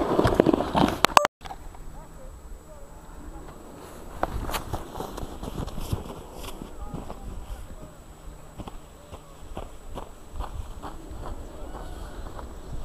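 Close rustling and handling noise right at the microphone that cuts off abruptly about a second in, followed by footsteps crunching through deep snow as a person in snowboard boots walks away.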